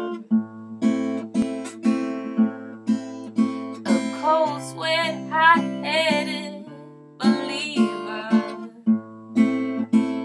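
Acoustic guitar strummed in a steady pattern of about two strokes a second, the bass of the chords changing every couple of seconds. A short wordless vocal line with vibrato rides over it near the middle, and the playing softens briefly before picking up again.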